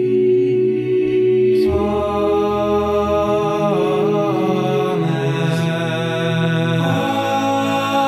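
Male vocal quartet singing a cappella in close harmony, holding long sustained chords that move to a new chord about two seconds in and again near the end.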